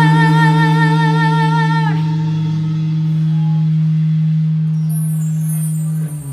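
Live rock band holding a final chord: a sustained low note and chord, with a wavering high note that bends down and drops out about two seconds in. The remaining chord rings on until it is cut off at the end.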